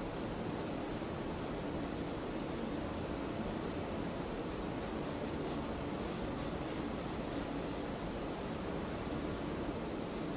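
Steady room tone: an even hiss and low hum with a constant thin, high-pitched whine.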